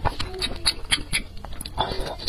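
Close-miked chewing of spicy instant noodles: rapid wet mouth clicks and smacks, with a short nasal hum in the first half. Noodles are slurped into the mouth near the end.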